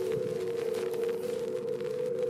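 Steady drone of two held low tones, an eerie horror sound effect.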